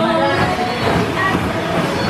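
Plastic ball-pit balls rustling and clattering against one another right at the microphone, a dense, continuous rattle.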